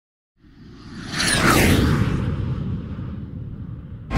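Intro whoosh sound effect: a noisy swell over about a second with falling whistling tones at its peak, over a deep rumble that slowly fades away.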